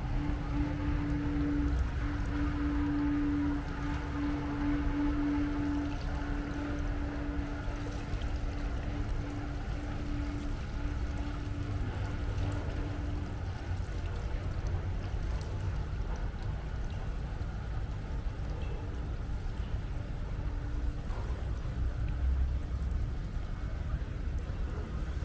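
Steady outdoor ambience of running water and a low rumble, with a steady humming tone through the first half that then fades out.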